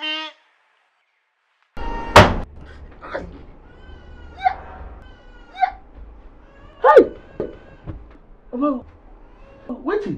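A sharp, loud hit about two seconds in, followed by a man's wordless cries and groans of pain, several short wavering calls spaced a second or so apart.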